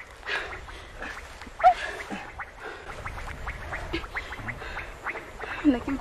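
Short, broken vocal cries from a person, mixed with a few words of speech, with two louder cries, one near the middle and one near the end.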